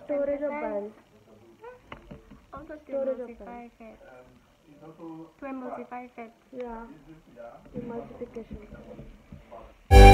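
Quiet speech: a voice talking in short phrases, ending with "thank you".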